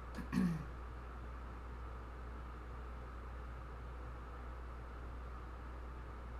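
A woman clears her throat once, briefly, about half a second in. After that only a steady low hum and faint room tone remain.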